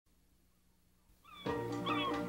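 Near silence for the first second, then gull cries, short hooked calls, with music of sustained notes coming in about a second and a half in.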